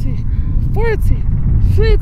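A woman's short voiced grunts of effort, one with each crunch, about one a second, three in all, over a steady wind rumble on the microphone.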